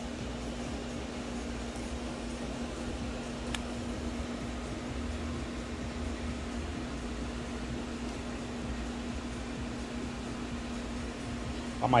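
Steady fan hum with a constant low tone throughout, and one light click about three and a half seconds in.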